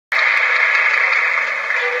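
A loud, even rushing noise that starts abruptly and eases off slightly near the end, with faint music tones coming in at the very end.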